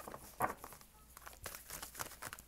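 A deck of tarot cards being shuffled by hand: soft rustling of cards sliding over one another, with a few short slaps, the loudest about half a second in.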